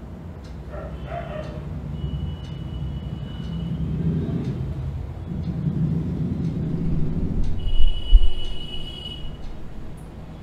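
A low rumble that builds over several seconds and peaks in a few heavy thumps about eight seconds in. Over it come faint taps and two thin high squeaks, fitting a marker drawing on a whiteboard.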